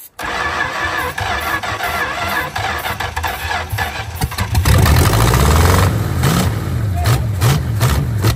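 A 1957 Plymouth Belvedere's long-dormant engine cranking on the starter, then catching about four and a half seconds in and running unevenly and loudly on starting fluid fed to the carburettor. It will not run on the gasoline in the float bowl.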